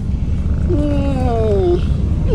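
Siberian husky giving one drawn-out vocal "woo", its pitch sliding downward over about a second. It starts a little way in, over a steady low rumble.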